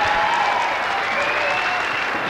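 Theatre audience applauding and laughing at a punchline, a steady wash of clapping with a few voices calling out over it.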